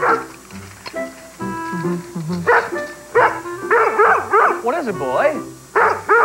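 Rough collie barking, a quick run of about eight barks that starts partway through, over background music.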